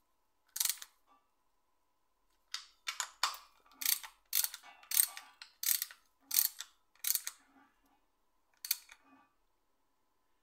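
Hand socket ratchet clicking in a run of short back-strokes, roughly every half second, as bolts on the upper timing chain guide are nipped up. There is one short burst near the start and a couple more near the end.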